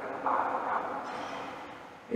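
A brief vocal sound from a woman speaking into a microphone, dying away slowly in the long reverberation of a large stone hall.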